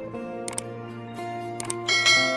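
Background music with click sound effects from a subscribe-button animation: a quick double click about half a second in and another near the end, with a bright chime starting right at the end.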